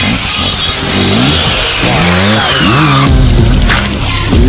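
Off-road motorcycle engines revving up and down in repeated rises and falls over background music. A long falling sweep runs through the music.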